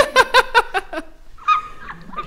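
A person laughing in a quick run of short, high-pitched "ha" bursts, about six a second for the first second, followed by one brief higher-pitched laughing sound about a second and a half in.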